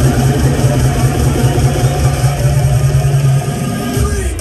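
Bass-heavy electronic dance music over a club sound system, recorded from the crowd: a loud, distorted, fast-pulsing bass line that cuts out about three and a half seconds in.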